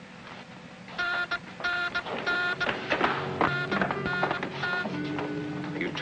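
Incoming-call signal of a 1950s TV sci-fi communicator: a buzzing electronic tone repeating in short beeps, about two a second with pauses between groups. Dramatic background music rises under it from about two seconds in.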